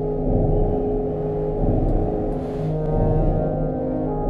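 Dark droning ambient music: layered low sustained tones over a dense rumble, holding steady, with a brief hissing swell a little past halfway.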